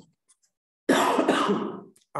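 A man coughing: one short double burst about a second in, lasting about a second.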